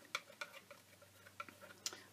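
Faint, scattered light clicks and ticks from a palette knife working cold wax medium across an art board, with a sharper click near the end.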